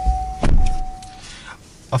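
A steady high electronic tone with a heavy thump about half a second in; the tone stops about a second later.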